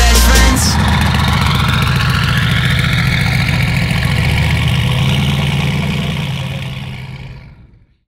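A car engine idling steadily with a fast, even low pulse, left alone after the music stops abruptly about half a second in; the engine sound fades out over the last two seconds.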